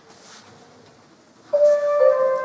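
Quiet hall room tone, then about one and a half seconds in a concert band's wind instrument comes in with a single held note, the opening of the piece.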